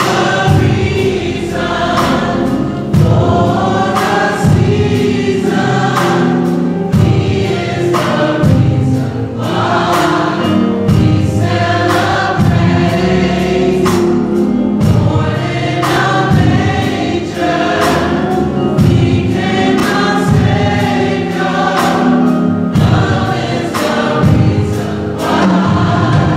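Gospel choir singing in harmony, backed by music with a steady beat.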